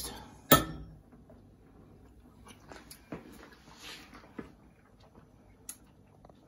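A metal spoon clinks once against glass about half a second in, followed by faint small clicks from handling utensils and bowl.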